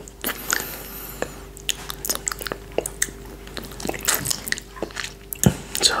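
Close-miked wet mouth sounds of a finger being licked and sucked clean of coconut yoghurt: scattered lip smacks and clicks, with a louder cluster about four seconds in and a sharp smack shortly before the end.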